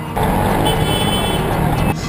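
Busy road traffic heard from an open taxi window, a dense, steady rumble of engines and tyres. A vehicle horn sounds for about a second in the middle.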